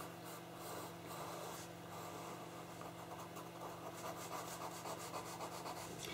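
Pastel pencil rubbing across pastel paper in short shading strokes, a soft irregular scratching.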